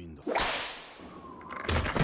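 Sharp whip crack from the anime's soundtrack, sudden about a third of a second in and fading over about a second, as a prisoner is lashed. A high thin tone and a low thud come in near the end.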